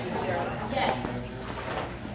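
Indistinct talk among several people, no one voice standing out.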